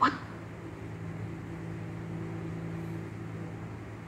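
A clipped word right at the start, then a steady low electrical hum with faint hiss.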